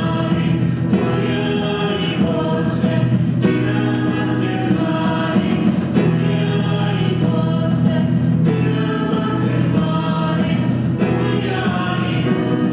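A church choir singing a hymn, held sung notes that change every second or two.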